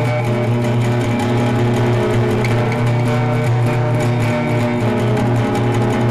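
Music: an instrumental guitar passage of a country song, played over a steady held low note, with no singing.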